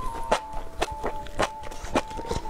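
Mouth sounds of spicy enoki mushrooms being chewed: sharp, wet clicks about twice a second. Under them runs background music with a simple held melody.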